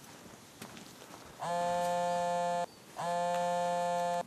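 A mobile phone ringing: two identical steady electronic rings of about a second each with a short gap between them, the first starting about a second and a half in.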